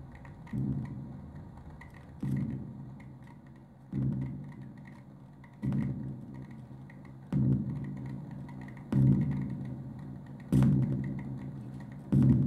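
Live electronic noise music from a self-made instrument: a low, pitched drum-like pulse repeating about every 1.7 seconds, each hit dying away over about a second and growing louder across the stretch. Faint clicks and crackles run under it.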